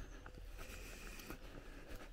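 Faint footsteps through grass, soft ticks about every half second, over a low steady rumble of wind on the microphone.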